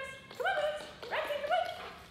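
A nervous lab–pit bull–mastiff mix dog giving about four short, high-pitched, whiny barks in quick succession: the anxious barking of a dog uncomfortable around new people.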